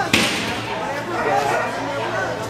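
A single sharp thump close to the microphone, then the chatter of voices in a large echoing hall.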